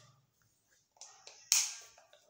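Quiet room, then short sharp clicking noises: a faint one about a second in and a louder one near the end that dies away quickly.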